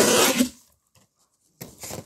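Cardboard rubbing and scraping as a packaged toy truck is slid out of a shipping box: a short loud scrape at first, a gap of about a second, then softer rubbing near the end.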